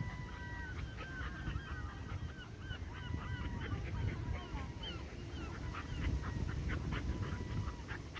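Two puppies, a boxer and an English Springer Spaniel, wrestling in play and giving many short, nasal whines and squeals, with a few sharper yips near the middle.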